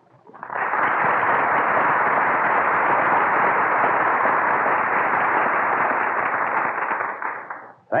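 Studio audience applauding, a dense, even clatter that starts about half a second in, holds steady and dies away near the end. Heard through a narrow-band 1940 radio broadcast recording.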